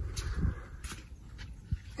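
Faint handling noise from a handheld phone being moved about: a low rumble that fades within the first half second, then a few soft clicks and rustles.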